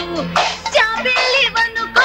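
Indian film song: a sung melody over an instrumental backing with percussion.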